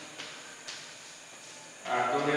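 Chalk scratching and tapping on a blackboard as numbers are written: a faint scratchy hiss with two light taps in the first second.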